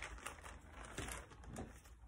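Faint rustling and light handling noises of a thick clear plastic bag sheet being lifted and turned, with a few soft ticks.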